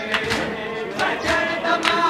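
Crowd of men chanting a mourning lament together, cut by repeated sharp slaps of hands striking bare chests in matam.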